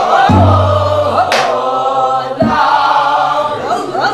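Korean Namdo folk song sung in the traditional throaty style, the notes shaken and bent with a wide vibrato. Two deep strokes of a buk barrel drum come in time with the singing, one just after the start and one a little past the middle.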